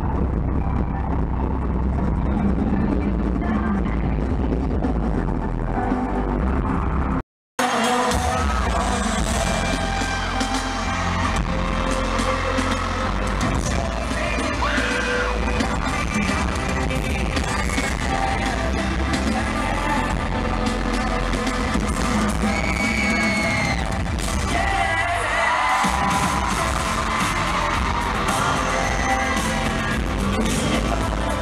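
Live amplified pop music recorded from the audience in an arena: a heavy bass beat and a male lead vocal, with crowd yells. The sound is muffled for the first several seconds, drops out for a moment about seven seconds in, then comes back clearer.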